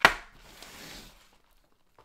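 A sharp tap, then about a second of dry crackly rustling as a hand grabs a handful of dried moss from a bowl.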